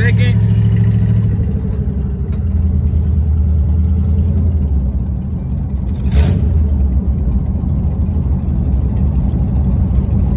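Swapped-in small-block Chevy 350 V8 of a Chevy Blazer, carbureted, running steadily under way, heard from inside the cab as a low drone whose pitch drops about a second in. A single sharp knock sounds about six seconds in.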